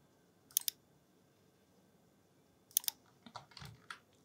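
Computer clicking while working in the modelling program: a quick double click about half a second in, another double click near three seconds, then a few lighter clicks near the end.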